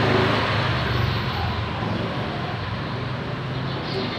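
Road traffic running steadily with a low engine hum, loudest at the start and easing off slightly.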